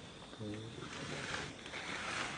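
A macaque vocalizing: a short low grunt about half a second in, then two breathy, hissing calls, the second the loudest.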